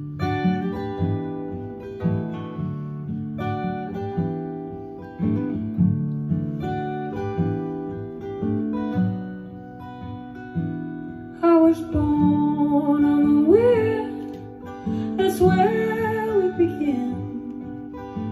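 Solo acoustic guitar playing a song's introduction in a steady picked pattern; about two-thirds of the way through, the guitarist begins singing over it.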